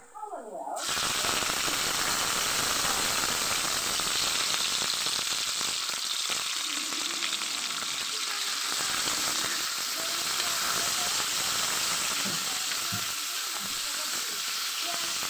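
Chopped garlic and onion frying in hot oil in a wok: a steady sizzle that starts about a second in and carries on with raw chicken pieces in the pan.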